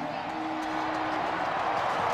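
Stadium crowd cheering a home touchdown, a dense steady wash of voices, with one held note sounding for about a second near the start.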